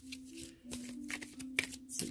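An oracle card deck being shuffled and handled, a run of quick papery clicks and flicks. A faint low hum sits underneath.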